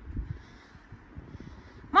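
A dog lapping water from a puddle on a rubber seesaw board, faint, over a low rumble; a voice starts right at the end.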